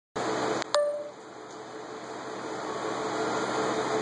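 Triumph Daytona 675's three-cylinder engine idling steadily through a custom-fitted Scorpion exhaust silencer, growing slightly louder. A click and a sharp metallic ping come just under a second in.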